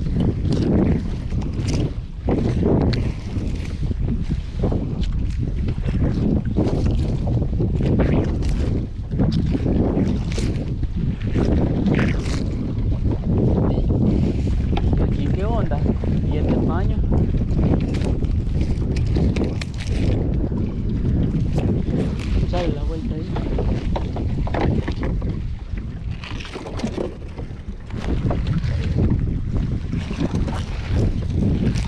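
Wind rumbling on the microphone, with the rustle and frequent knocks of a wet nylon trammel net being hauled by hand into a small boat.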